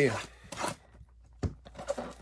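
Cardboard trading-card blaster box being opened by hand: a brief scrape of cardboard about half a second in, a single light knock around the middle, and faint rustling of the packs near the end.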